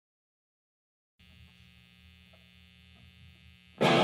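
Silence, then about a second in the steady electrical hum and buzz of live guitar amplifiers left on. Near the end, a loud strummed electric guitar and the band come in as the song starts.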